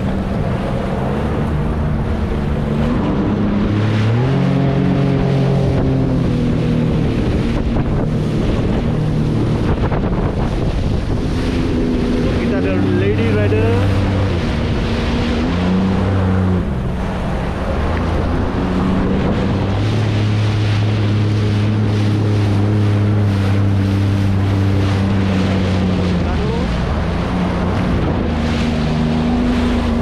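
Sea-Doo jet ski engine running under way, its pitch rising and falling with the throttle and holding steady for several seconds in the second half, over the rush of water spray and wind buffeting the microphone.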